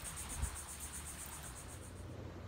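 Insects chirping in a rapid, even, high-pitched pulse, over a low rumble. The chirping cuts off just before the end.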